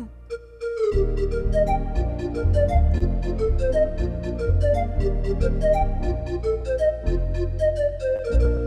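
Lowrey Legend Supreme home organ playing a melody on its pan flute preset over guitar accompaniment and pedal bass notes, with no rhythm section. The bass and accompaniment come in about a second in, under the held melody.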